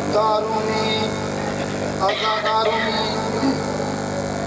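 A man's voice in melodic, chanted recitation through a microphone and loudspeaker, in two sustained phrases, with a steady low hum underneath.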